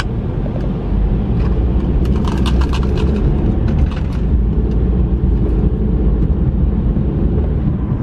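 Steady low road and engine rumble heard from inside the cabin of a moving Mercedes-Benz car. About two to three seconds in, a short patter of small clicks.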